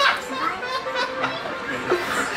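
A man laughing hard, with other voices chattering and laughing along.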